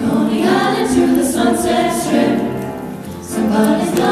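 Vocal jazz ensemble of mixed male and female voices singing in close harmony into microphones.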